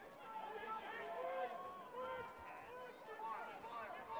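Faint, distant shouts and calls from players and spectators at a lacrosse game, over open-air stadium ambience.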